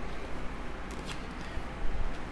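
Tarot cards being dealt onto a wooden table: quiet slides and taps of card on wood, with a slightly louder tap near the end.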